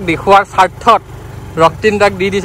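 A man talking while riding, over the steady low hum of a motorbike's engine running along at an even pace; the engine shows plainly only in a short pause about a second in.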